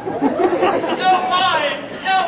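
Several people talking loudly at once, their voices overlapping into a jumble that thins toward a single clearer voice near the end.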